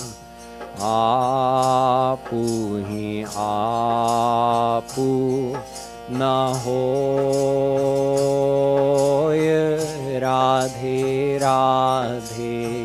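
A man singing a Hindi devotional couplet (doha) in a slow, ornamented traditional style, with wavering held notes and short breaths between phrases, over a harmonium sustaining chords. A light steady percussion beat ticks along about twice a second.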